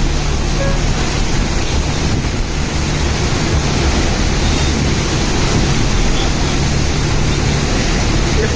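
Strong cyclone wind buffeting the phone's microphone: a loud, steady rush of noise with a low rumble underneath, unbroken throughout.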